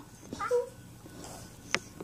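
A brief high-pitched laugh about half a second in, followed by a single sharp click near the end.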